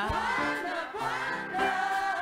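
Gospel choir singing, with a lead singer on microphone. The voices hold long notes that slide between pitches.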